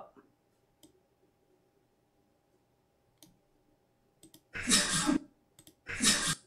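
Several sharp, isolated computer mouse clicks about a second apart, at a desk in a small room. Near the end they are followed by two louder, noisy half-second sounds.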